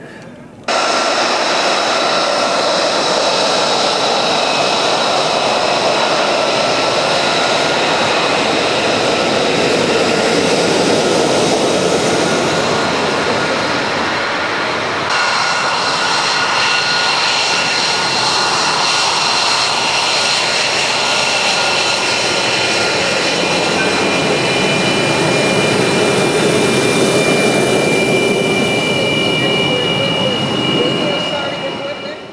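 Lockheed Martin F-22 Raptor's twin Pratt & Whitney F119 turbofan engines running at taxi power: a loud, steady jet roar with high-pitched whine tones. It starts suddenly about a second in, and its character changes abruptly about halfway through.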